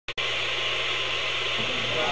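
A click, then a steady hiss with a low hum under it.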